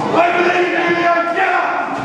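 Wrestling crowd shouting and chanting, with long drawn-out calls.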